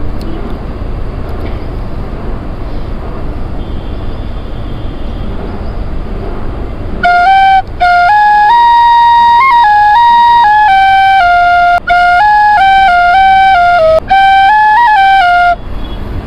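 Bamboo flute playing a short melody of held and stepping notes for about eight seconds, loud and clear, broken by a few quick breaths. Before it comes in, only a steady low rumble of background noise.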